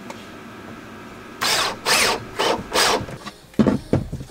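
Cordless drill driving a screw into a wooden wall board in about five short bursts, followed by two sharp knocks near the end.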